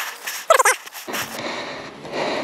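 A dog's short, high yelp, once, about half a second in, over steady rushing noise that grows deeper from about a second in.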